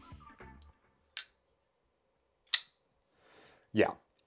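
Koenig Arius folding knife with a rose gold DLC blade being worked by hand: two sharp clicks from the blade's action, about a second and a half apart.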